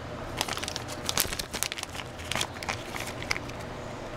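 A clear plastic parts bag crinkling in the hands as the packaged oil pressure switch inside is handled: a run of irregular crackles.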